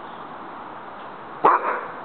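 A young Rottweiler gives a single short bark about one and a half seconds in: an alert bark answering the "What's that?" cue.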